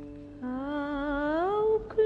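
Film score: the last plucked-string note fades, then about half a second in a woman's voice starts humming a slow, wordless tune, a long held note that rises near the end.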